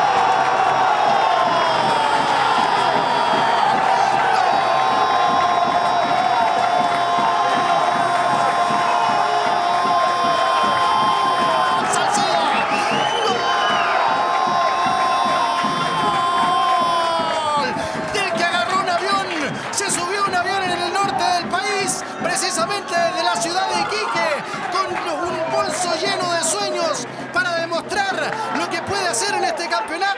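A football commentator's long drawn-out goal shout, one held note for about seventeen seconds, over crowd cheering. Near the end it gives way to fast excited shouting.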